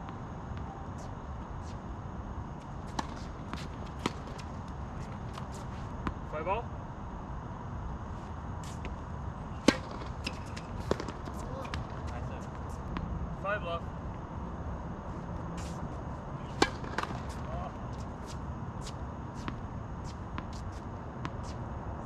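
Tennis ball struck by rackets and bouncing on a hard court, heard from a distance as sharp pops at irregular intervals, the loudest about ten and seventeen seconds in. Faint calls from the players come between the shots.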